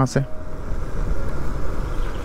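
Wind rushing over the microphone and road noise from a motorcycle coasting downhill with its engine switched off, a steady low rumble with no engine note.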